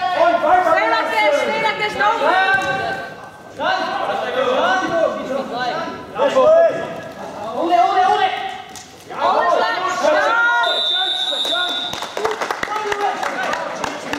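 Men's voices shouting from the side of a wrestling mat, echoing in a large sports hall, with short pauses. Past the middle comes a high steady tone lasting about a second, followed by a few sharp knocks.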